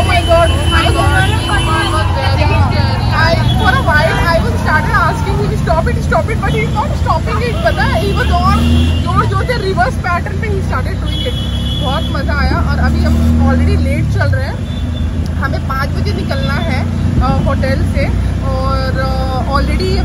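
A woman talking over the steady engine and road rumble of a moving auto-rickshaw, heard from inside the cabin.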